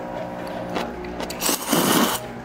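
Thin noodles being slurped noisily straight from a paper cup, the sucking hiss surging strongest near the end.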